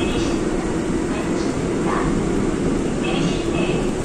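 Steady low rumble of a Seoul Subway Line 5 train running, heard inside the passenger car. An on-board PA announcement voice plays faintly over it.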